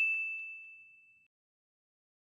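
A single bright electronic notification ding, one bell-like tone fading out within about a second and a half, with a couple of faint clicks near the start: the chime sound effect of an animated subscribe-and-bell button.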